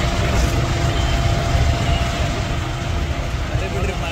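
An SUV's engine idling close by, a steady low rumble, with a crowd's voices in the background.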